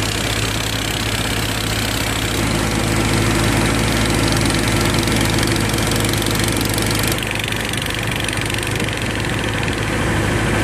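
Motorboat engine running steadily under way, a constant low drone, with the rush of wind and water from the boat's wake; the hiss thins a little about seven seconds in.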